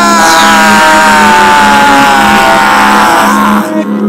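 Rap beat playing under a loud, noisy sound effect whose pitch falls slowly for about three and a half seconds and then cuts off.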